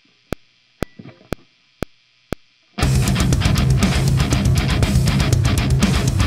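Metronome clicks, about two a second, counting in; then, nearly three seconds in, a heavily distorted electric guitar starts a metal riff.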